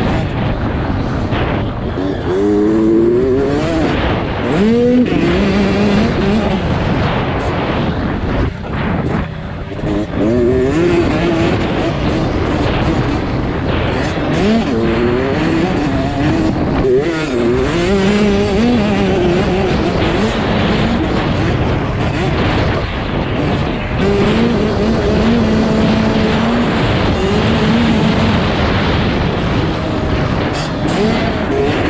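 Small two-stroke motocross bike engine revving hard, its pitch climbing and dropping again and again as the rider works the throttle and gears, with wind rushing over the onboard microphone. The engine eases off briefly about eight and a half seconds in.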